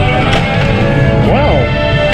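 Pinball machine game audio: loud electronic music with a short voice-like callout about one and a half seconds in. A couple of sharp clicks from the ball and mechanisms on the playfield are heard over it.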